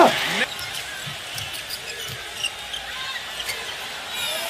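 Broadcast sound of a basketball game: a ball bouncing on the hardwood court several times over a steady low arena background. A man's voice trails off in the first half-second.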